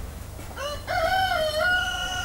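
Rooster crowing: one long crow that starts about half a second in, wavers briefly, then holds a steady pitch.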